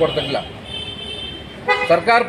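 A vehicle horn sounding one steady, high-pitched note for about a second, between stretches of a man's speech.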